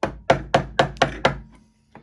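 A round wooden carving mallet striking a carving chisel into a tree branch: six quick, sharp knocks about four a second, then a pause.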